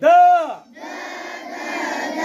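A large group of schoolchildren chanting a Marathi letter in unison as part of an alphabet drill. It opens with one short, loud pitched call that rises and falls, followed by the many voices of the group.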